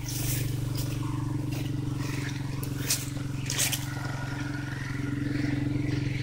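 Riding lawn mower engine running at a steady speed, with a couple of short knocks or clicks in the middle.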